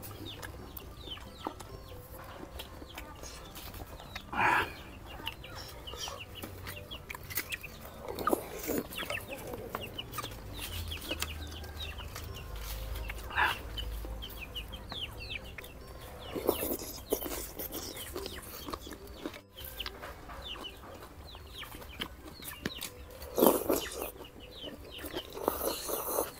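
Close-up eating sounds from a meatball and noodle soup: chewing, wooden spoons clicking against ceramic bowls, and wet slurps, the loudest slurps near the end. Fowl clucking in the background.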